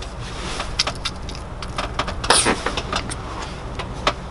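Plastic squeeze bottle of yellow mustard being squeezed into the mouth and handled: scattered small clicks and sputters, with one louder noisy burst a little past halfway, over a low steady hum.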